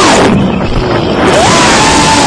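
GEPRC CineQueen FPV drone's motors and propellers heard through the onboard camera: a loud whine over rushing air. About a quarter second in, the whine drops in pitch and the rush thins as the throttle is pulled back. About a second and a half in, it climbs again as the throttle comes back up.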